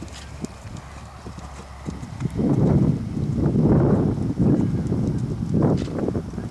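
Hoofbeats of a horse moving on grass turf, much louder and denser from about two seconds in as it comes close.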